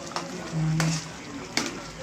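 A spatula stirs and scrapes a thick coconut-milk and pork stew in a metal wok over the steady bubbling of the simmering sauce. A few short scraping strokes against the pan can be heard.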